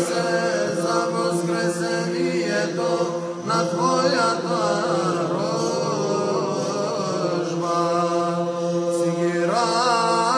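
Orthodox Byzantine church chant, with a solo male voice singing over a steady low held drone (ison). The melody moves into ornamented, wavering runs near the middle.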